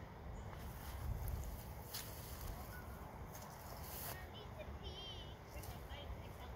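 Faint outdoor background: a low, steady rumble with a few soft clicks, and a brief warbling chirp about five seconds in.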